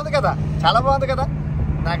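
A man talking over the steady low rumble of a moving car, heard from inside the cabin from the back seat.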